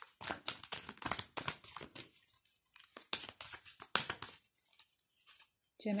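A deck of tarot cards being shuffled by hand: a quick, uneven run of papery card slaps and rustles, with short pauses between handfuls.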